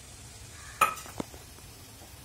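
Minced mutton sizzling faintly in a frying pan. About a second in there is a single ringing metal clink as a small steel bowl knocks the pan while chopped green chillies are tipped in, then a lighter tick.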